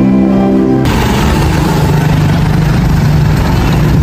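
Background music for about the first second, then cut off abruptly by a steady, rough rumble of street traffic with a motorcycle engine running.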